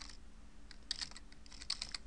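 Computer keyboard being typed on: a scattered run of quiet keystrokes, some coming in quick clusters of two or three.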